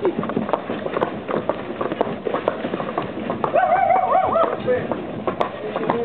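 Hackney horse's hooves clip-clopping on paved ground as it is driven in harness: a quick, steady run of hoofbeats.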